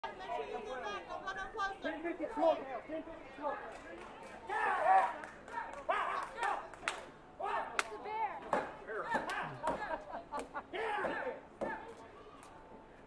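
Background chatter of several people's voices, not close, with a sharp click about eight seconds in.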